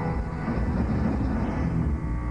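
Heavy metal band playing live, loud and distorted, with a dense, heavy low end of guitars, bass and drums.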